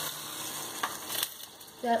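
Hot oil sizzling steadily in a wok on a low flame, with a couple of short clicks partway through.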